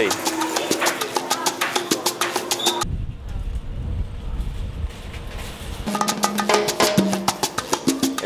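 Upbeat salsa-style Latin music with busy percussion. About three seconds in it cuts abruptly to a low wind rumble on the microphone, which lasts about three seconds before the music comes back.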